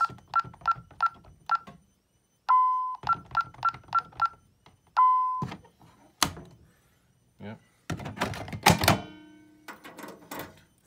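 ADT alarm keypad beeping as a code is keyed in: two quick runs of about six short key-press beeps, each followed by one longer, lower beep. A sharp click follows, and a loud clattering burst comes near the end.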